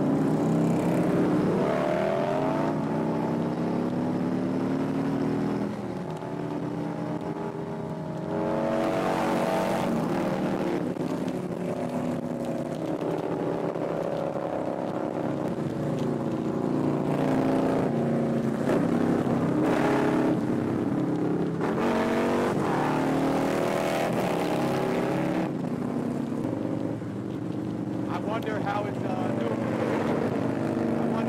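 Harley-Davidson touring motorcycle V-twin running at road speed, its note rising and falling with the throttle, with wind rushing over the microphone in spells.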